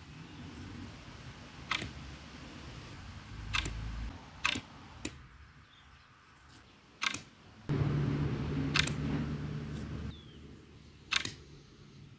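A series of about six sharp clicks at irregular intervals over a quiet background, with a low steady hum from about eight to ten seconds in.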